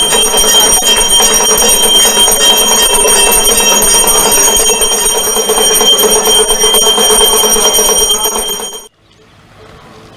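Temple bell rung rapidly and without pause during an aarti: a loud, steady metallic ringing that cuts off abruptly near the end.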